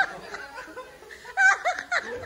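People laughing, quieter at first, then a louder burst of laughter about a second and a half in.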